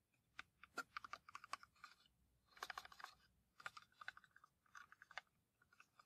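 Fingers tapping quickly and lightly on a cardboard matchbox, in several bursts of rapid taps.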